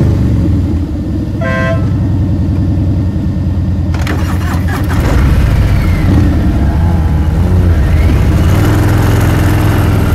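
Cruiser motorcycle engine running loudly, then pulling away and gathering speed, with wind and road noise rising from about four seconds in. A short horn beep sounds about a second and a half in.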